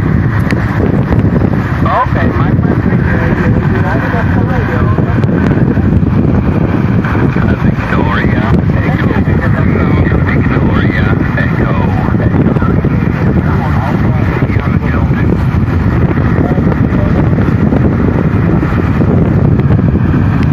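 Tecsun PL-660 shortwave receiver's loudspeaker playing weak single-sideband voice from amateur stations on the 20-metre band, half buried in heavy hiss and static, with wind buffeting the microphone.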